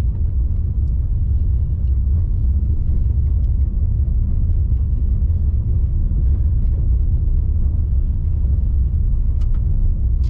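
A car driving slowly on an unpaved dirt road, heard from inside the cabin: a steady, loud low rumble of the tyres on the rough surface and the running engine.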